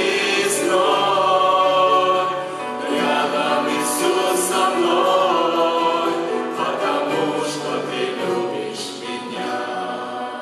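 Small mixed worship ensemble, men's and women's voices in harmony, singing a Russian-language hymn with grand piano and acoustic guitar accompaniment, growing quieter toward the end.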